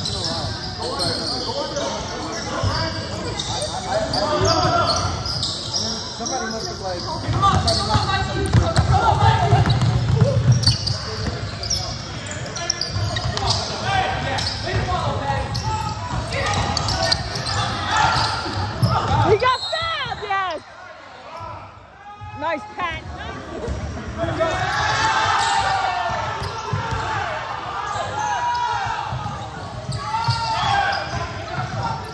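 Live basketball play on a hardwood gym floor: the ball dribbled and bouncing in repeated sharp thuds, sneakers squeaking in short high chirps about two-thirds of the way through, all echoing in a large gym.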